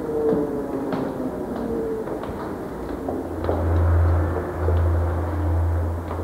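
Sparse clicks of heeled shoes stepping on stone stairs, over a few fading held tones. About three seconds in, a loud deep hum sets in and swells and dips.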